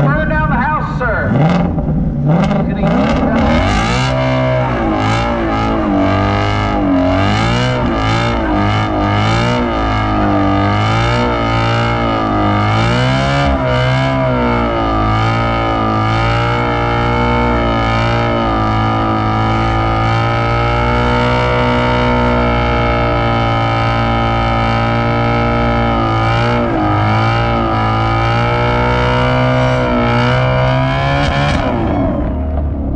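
Shelby GT350 Mustang's V8 revved hard during a burnout, rear tires spinning and smoking. About four seconds in the revs jump and swing up and down for some ten seconds, then are held steady and high with one brief dip near the end.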